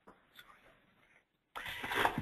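Near silence with a few faint ticks on a webinar's audio line, then, about one and a half seconds in, a steady hiss of background noise comes up.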